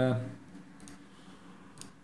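A couple of quick computer mouse clicks close together near the end, after a quiet pause.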